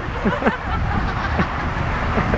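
Street traffic noise: a steady low rumble of cars on a wide city road, with a few brief faint voice sounds like stifled laughter.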